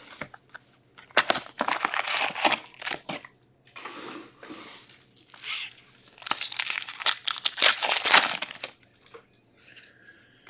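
Trading-card packaging being opened: a hobby box is opened and a wrapped card pack is torn open. The wrapper crinkles in uneven bursts, loudest about six to eight seconds in.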